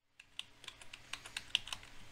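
Computer keyboard keys tapped in quick succession, about five clicks a second, starting a moment in out of silence: keyboard shortcuts stepping back and forth through animation frames.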